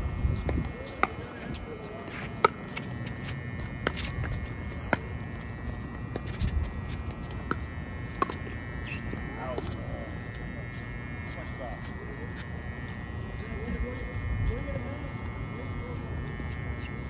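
Pickleball rally: a string of sharp pops as paddles strike a plastic pickleball back and forth, irregularly spaced about a second apart, the loudest about two and a half seconds in, growing sparser after about ten seconds.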